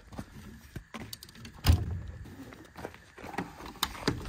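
Orange ratchet tie-down strap being released and pulled off a flatbed trailer: scattered clicks and metallic rattles from the ratchet buckle and hook on the steel deck, with one louder knock a little under two seconds in.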